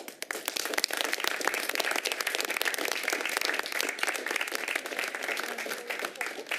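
Applause from a group of people clapping by hand, breaking out at once and holding steady.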